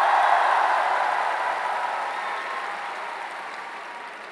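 Audience applauding, loudest at the start and slowly dying away.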